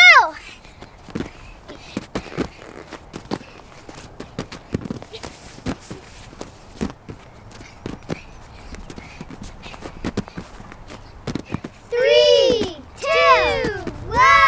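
Children's bare feet and hands landing on folding gymnastics mats in repeated hopping jumps: an irregular patter of soft thuds, several a second. A child's high voice calls out at the start, and three more loud calls come near the end.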